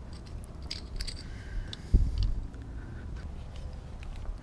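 Floor caps being pressed by hand into the holes of a camper van floor panel: faint handling noise and a few small clicks, with one dull thump about halfway through.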